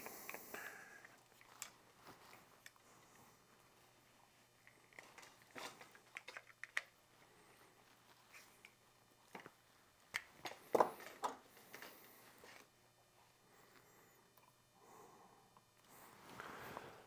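Scattered light clicks and knocks from a compound bow being handled while its draw weight is adjusted, with a cluster of louder knocks a little under eleven seconds in.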